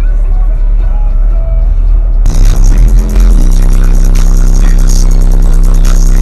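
Car-audio subwoofers playing bass-heavy electronic music at extreme volume. About two seconds in, the sound turns harsh and distorted, as from a microphone overloaded inside the car. From about three seconds in, a single deep bass note is held steadily.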